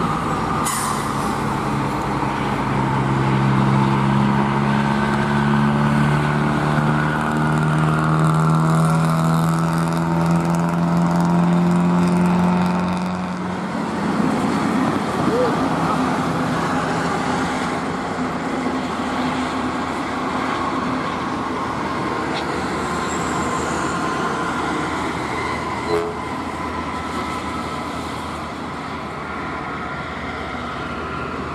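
A heavy diesel truck's engine pulling under load, its pitch rising slowly for about ten seconds, then stopping. After that comes a steady rush of tyre and engine noise from trucks passing on the highway.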